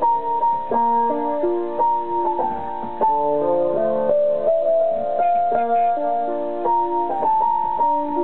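Technics PX5 digital piano played in its electric piano voice with built-in chorus: a slow, sad melody in B minor in the upper notes over held chords.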